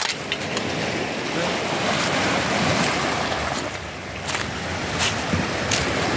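Small sea waves washing in over a rocky, pebbly shore, a steady rushing that swells and eases, with a few short clicks among the stones.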